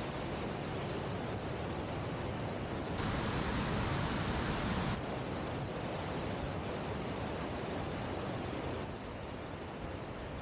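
River waterfall: whitewater pouring over a weir and churning in a steady, even rush. It is a little louder for about two seconds in the middle and drops slightly near the end.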